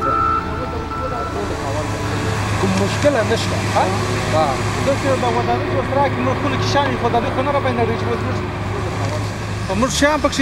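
Bulldozer's diesel engine running with a steady low drone, under men's voices.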